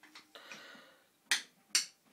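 Toy wooden mallet knocking on a wooden box, a baby's drumming: a couple of faint taps at the start, then two sharp knocks about half a second apart, a second and a half in.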